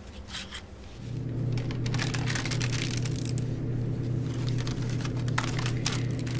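Paper and journal pages being handled and rustled, with short crinkly scrapes. About a second in, a steady low electrical hum begins underneath and keeps going.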